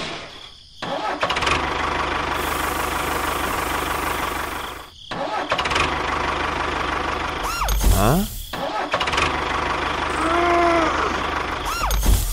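Engine running loud and steady, cutting out and starting again several times. There is a rising whine about eight seconds in and a short voice-like call around ten and a half seconds.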